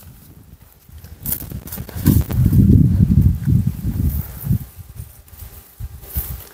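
Low, irregular thuds and rumble of a hand-held camera carried on foot across dry ground: footsteps and handling noise, strongest in the middle.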